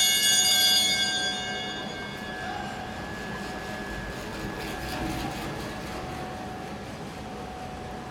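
A bell rings out with a bright, clanging metallic tone, loudest in the first second and fading over the next couple of seconds, one lower note lingering for several seconds over the steady background noise of the track.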